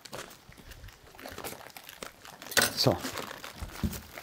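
Waxed butcher paper crinkling and rustling as a wrapped package is handled, faint and irregular.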